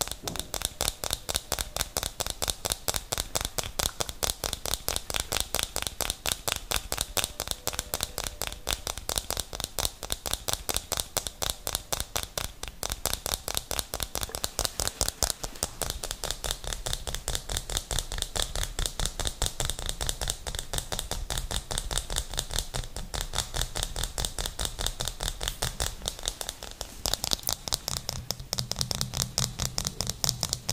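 Fast, continuous tapping on a small round plastic lid right up against the microphone: a rapid, even stream of sharp clicks.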